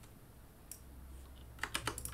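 Keys and clicks on a computer keyboard and mouse: a single click a little past a third of the way in, then a quick run of key presses near the end.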